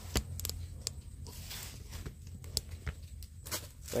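Quiet handling noise: scattered clicks and taps and a brief rustle as plastic power plugs and socket strips are picked up and moved about by hand.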